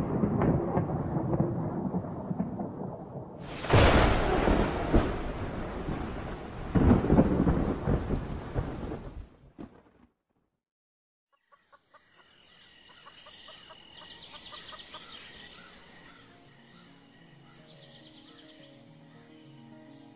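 Thunderstorm sound effect on a film soundtrack: thunder over rain, with two loud thunderclaps about four and seven seconds in, dying away before the middle. After a brief silence, faint music comes in.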